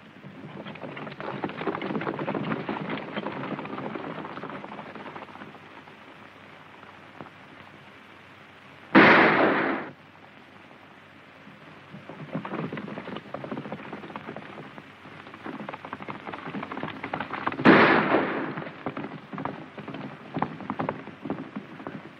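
Several horses galloping, a dense patter of hoofbeats that swells and fades. Two loud shots ring out, one about halfway through and one a few seconds before the end.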